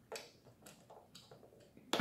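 Faint, scattered clicks and taps of eating: forks picking at salad in plastic takeout containers, with one sharper click near the end.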